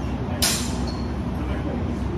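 One sharp clack of steel practice longswords striking, about half a second in, ringing briefly, over a steady low rumble of room noise.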